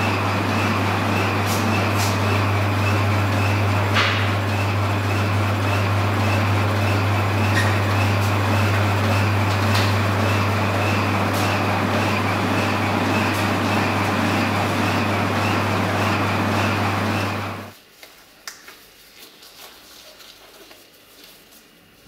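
Steady running of electric workshop machinery, a strong mains-type hum under an even whir, which cuts off suddenly near the end. Afterwards only faint clinks and handling noises remain.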